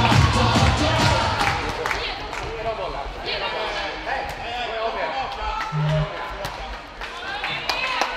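Sports hall sound of a handball match: music with a low beat for the first couple of seconds, then players and spectators calling out, with sharp knocks of the handball bouncing and being caught on the court. A short low steady tone sounds briefly about six seconds in.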